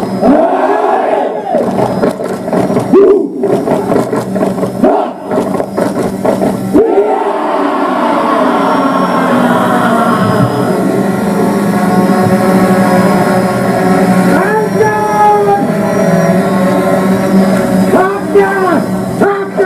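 A group of soldiers chanting and shouting in unison in a haka-style war chant. The first several seconds are short, sharply broken shouted phrases, and from about seven seconds in it becomes a long, drawn-out chant.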